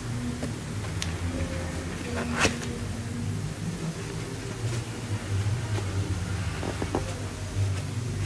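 Cardboard being folded and handled against a cardboard box: a few light knocks and rustles, the clearest about two and a half seconds in, over a steady low hum.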